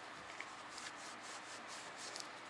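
A cloth rag rubbing against an Isuzu 4JA1 diesel piston as it is wiped clean. The rubbing is faint, with a run of quick strokes from about half a second in.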